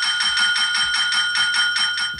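A small desk call bell rung rapidly and continuously, about eight dings a second, each strike ringing with a bright metallic tone.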